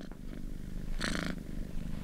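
A cat purring up close: a fast, steady pulse, with a louder, brighter stretch about a second in.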